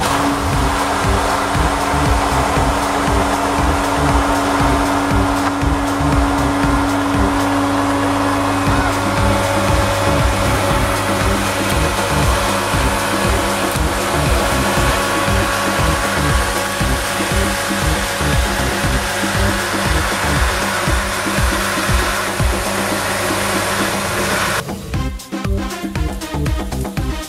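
Electric jet pump (Gardena 3500/4 Classic, 800 W) switched on and running under load with a loud, steady motor whine and hum, cutting off suddenly about a second before the end.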